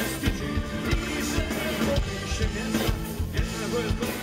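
Live rock band playing, with electric guitar, bass guitar and drum kit and a steady beat of drum hits.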